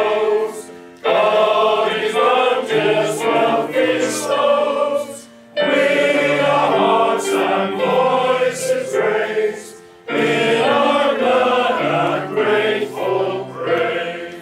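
Male voice choir singing a hymn to keyboard accompaniment. The sung lines break for short pauses about a second in, about five and a half seconds in and about ten seconds in. The last line dies away at the end.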